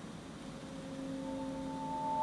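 Alto saxophone entering very softly about half a second in with a sustained sound of several tones at once. It swells slowly in loudness over a light background hiss.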